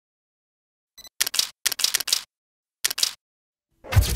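A DSLR camera: a short focus-confirm beep about a second in, then the shutter firing in three quick bursts of rapid clicks, as in continuous shooting. Near the end comes a low hit.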